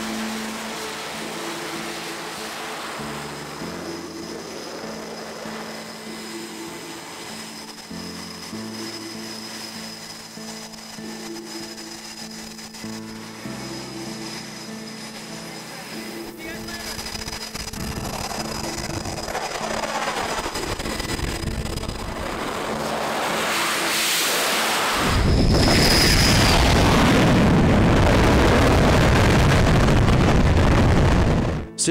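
Background music with held notes over a thin jet whine, then an F/A-18 Super Hornet's jet engines rising from about halfway through and running at full power, loud and steady, from a few seconds before the end as the jet launches.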